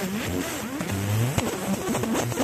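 A 50 W fiber laser marking stainless steel. Its scanner head buzzes, the pitch gliding quickly up and down as the beam traces the letters, with a few sharp clicks, one loud click about halfway through.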